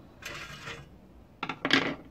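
Thin scrap copper wire rattling and clinking against the stainless-steel pan of a digital scale as it is lifted off, in two short bursts, the second louder near the end.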